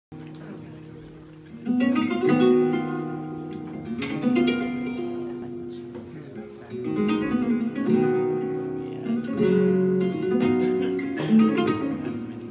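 Flamenco guitar playing the opening of a soleá: strummed chords come about every two to three seconds, each left to ring out and fade before the next.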